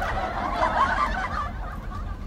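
High-pitched cackling laughter that fades out about one and a half seconds in, over the low steady rumble of the van's engine.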